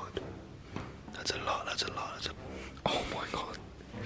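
A man whispering in two short stretches.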